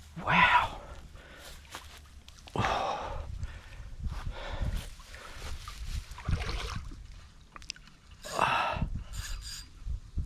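A man's excited gasps and heavy breaths, five or so a couple of seconds apart.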